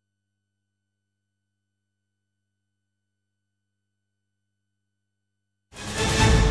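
Near silence with only a faint steady electrical hum, then near the end the programme's dramatic intro theme music starts suddenly at full loudness.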